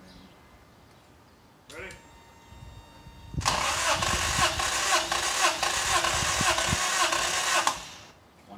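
Starter motor cranking the 1983 Toyota Tercel's 3A four-cylinder engine for about four seconds, with a regular pulse of compression strokes, during a compression test with a gauge screwed into a spark-plug hole. The cranking stops abruptly and the engine does not fire.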